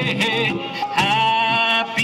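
Square dance singing call: a man sings the call over a recorded country-style instrumental track, holding a long wavering note in the second half.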